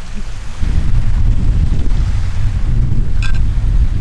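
Wind buffeting the microphone: a heavy, unsteady low rumble that rises about half a second in. A brief sharp sound comes about three seconds in.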